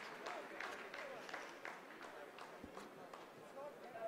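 Faint, scattered clapping from a room of scientists, thinning out as the applause dies away, with faint voices behind it.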